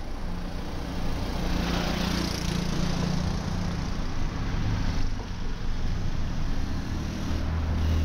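Street traffic: engines of vehicles close by, small-engined motor rickshaws among them, running with a steady low hum over general street noise.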